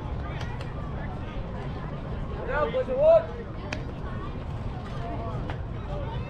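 Distant voices of baseball players and spectators calling out, with one loud, pitched shout about two and a half seconds in, over a steady low rumble. A few short, sharp knocks come and go.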